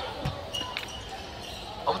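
A dull low thump about a quarter second in, over faint sports hall background noise; a man's voice starts near the end.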